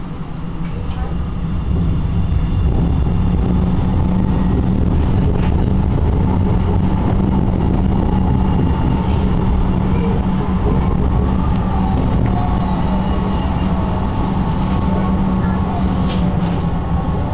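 Tram running, heard from inside the passenger cabin: a steady low rumble of wheels and traction motor that grows louder about two seconds in as the tram pulls away from the stop and gathers speed, then holds steady.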